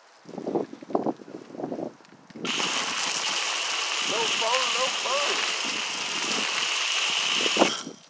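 Hose-end foam gun spraying soapy water onto a car's body panels: a steady spray hiss that starts about two and a half seconds in and cuts off just before the end.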